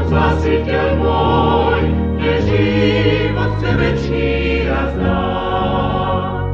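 A singing group performing a sacred song as a choir, from a live recording played back off cassette tape, with a dull top end.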